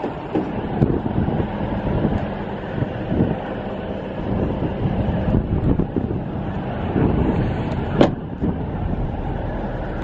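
Wind buffeting the microphone, a loud uneven low rumble that swells and fades, with one sharp click about eight seconds in.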